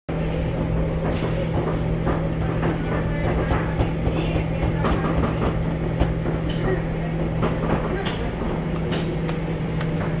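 Steady low machinery hum and rumble in a bakery kitchen, with scattered soft taps and pats as fingertips press grooves into sesame-topped nan dough.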